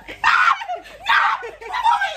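Women shrieking and laughing: two loud shrieks about a second apart, with laughter around them.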